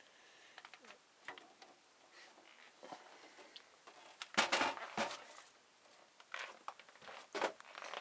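Handling noise: rustling and scattered clicks as the camera is carried and things are moved about, with a louder cluster of rustles about halfway through.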